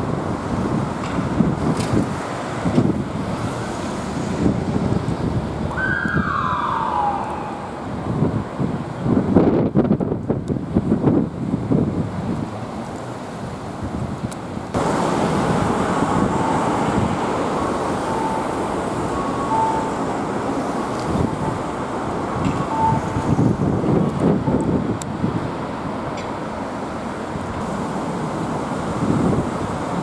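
Road traffic at a busy intersection, vehicles passing, with louder passes about nine to twelve seconds in. About six seconds in, a siren sounds one short note that falls in pitch.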